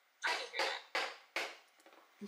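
A woman's breathy laughter: four short huffs of breath in quick succession.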